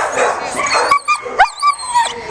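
Young German Shepherd whining and yipping in high cries that rise and fall, from an excited dog that wants to play.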